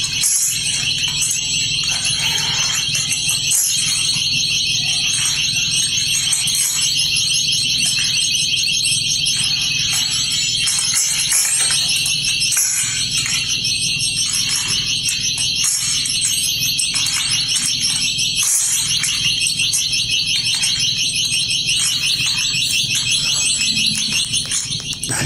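Continuous high-pitched electronic alarm with a fast warble: the anti-theft alarm of display iPhones being torn from their security tethers on store tables.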